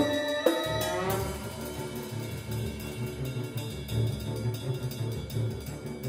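A small chamber ensemble of winds, strings and percussion playing contemporary concert music. Held notes in the first second give way to a denser passage over a low, pulsing rhythm with percussion.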